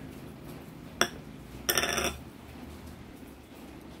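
Kitchen utensils being handled over a plastic mixing bowl: a sharp click about a second in, then a brief ringing clink just before two seconds.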